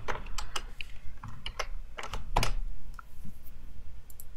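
Typing on a computer keyboard: irregular key clicks, with a louder keystroke about two and a half seconds in.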